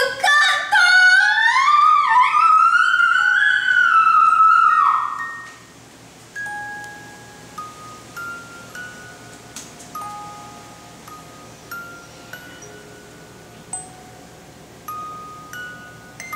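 A long, loud sliding vocal line for about five seconds, then a quiet, slow melody of single bell-like notes, one at a time, like a creepy music-box tune.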